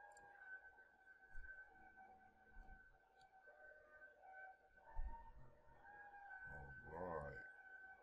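Near silence: faint room tone with a steady high whine, a soft thump about five seconds in, and a brief low voice sound near the end.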